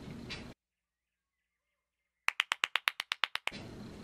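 A stretch of dead silence, then a quick, evenly spaced run of about a dozen sharp clicks or claps lasting about a second.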